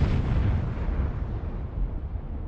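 Tail of a cinematic boom sound effect: a deep, noisy rumble that fades slowly, growing duller as it dies away.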